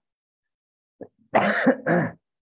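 A man coughs twice in quick succession, starting a little past the middle, heard through a Zoom call's audio.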